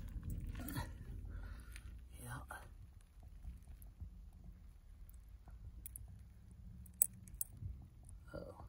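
Quiet handling noises as a pair of pliers works a lure's hook free from a small trout's mouth, with a few small sharp clicks, the loudest about seven seconds in, over a low steady rumble.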